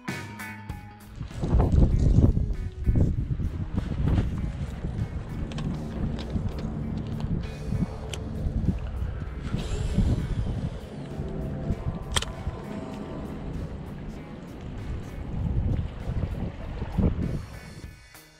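Wind buffeting an action-camera microphone in uneven gusts, with background music running underneath. There is one sharp click partway through.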